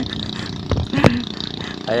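Two short vocal sounds from a man's voice about a second in, then a spoken call near the end, over low outdoor background noise.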